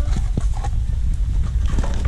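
A plastic cup and trowel scooping potting mix in a plastic bucket: a few light knocks and scrapes over a steady low rumble.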